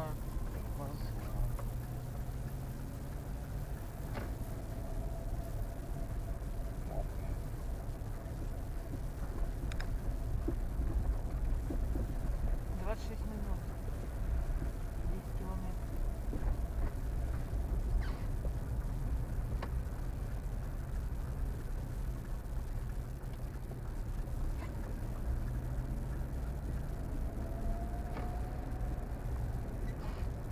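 Car running at low speed, heard from inside the cabin: a steady low engine and road rumble, with a few light clicks and knocks.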